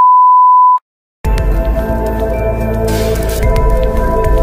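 A single steady electronic beep that cuts off just under a second in. After a brief silence, background music with long held tones and a deep low rumble starts about a second in and carries on.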